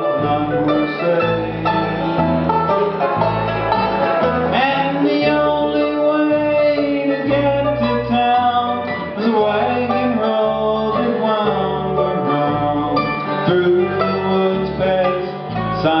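Bluegrass band playing an instrumental break on acoustic guitars, mandolin and banjo, over a steady bass line of about two notes a second.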